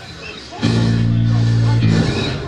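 Electric guitar through a stage amplifier holding one low note for about a second, starting about half a second in and cutting off just before the end.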